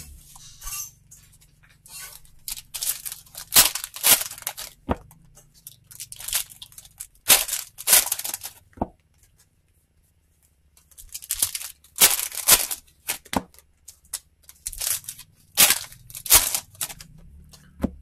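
Trading cards being handled, slid and set down on a stack on the table: a string of sharp slaps and short rustles, stopping for a moment about halfway through.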